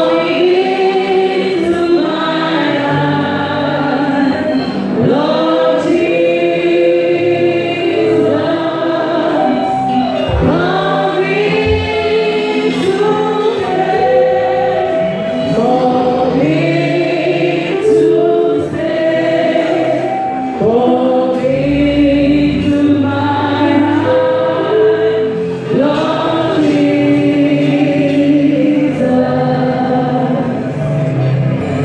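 A choir singing a gospel hymn, many voices together in phrases of held notes.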